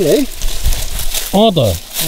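Turmeric leaves and stems rustling and dry soil crackling as hands dig around the base of a turmeric plant, a continuous scratchy rustle between a few spoken syllables.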